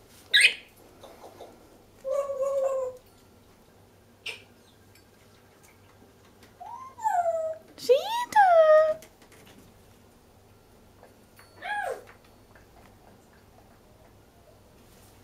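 Congo African grey parrot calling in separate bursts: a sharp high squeak at the start, a short held note about two seconds in, a run of whistled calls that rise and fall in pitch around the middle (the loudest part), and one more such call near the end.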